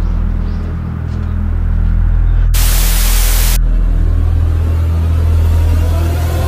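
Low droning music bed, cut by a burst of TV static hiss about two and a half seconds in that lasts about a second and stops abruptly.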